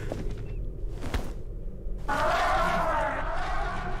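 Soundtrack of the animated episode being watched: faint for the first two seconds, then a steady, wavering mid-pitched sound begins about two seconds in and holds.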